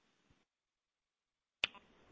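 Near silence on a telephone conference line, broken by a single sharp click about one and a half seconds in as a line switches open, followed by faint line hiss.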